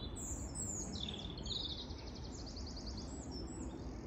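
Songbirds singing high, fast-repeated trilling phrases over a steady low background rumble of outdoor noise.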